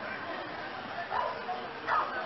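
A dog barking in short, separate barks, one about a second in and another near the end, over a steady background hum.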